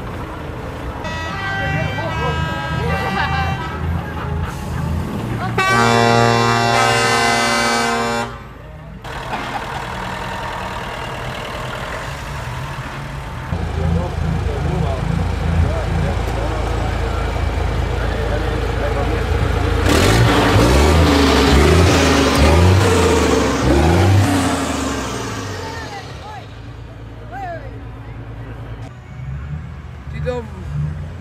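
Truck air horn sounding a steady multi-tone blast for about two seconds, starting about six seconds in, the loudest event; fainter steady horn-like tones come before it. A loud stretch of vehicle noise with a low rumble follows around twenty seconds in.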